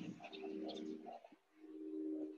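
A dove cooing faintly: two low, steady coos, each about a second long.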